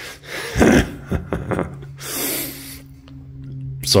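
A man laughing: a loud burst under a second in, a few shorter bursts, then a long breathy intake of breath about two seconds in, trailing off.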